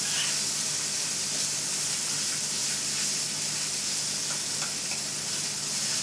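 Crumbled tofu sizzling in hot oil in a frying pan, a steady hiss, with a few faint clicks of the utensil as it is stirred.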